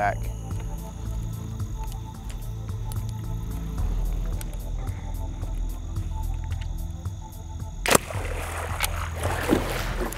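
A low, steady music drone under the hunt, broken about eight seconds in by a single sharp crack as the bow is shot. A churning splash of water follows, with the arrow-struck alligator thrashing at the surface.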